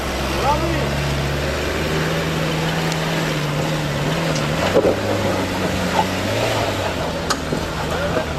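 Land Rover Discovery's engine running under load as the 4x4 climbs a steep, loose rocky hill, a steady note that drops in pitch about halfway through.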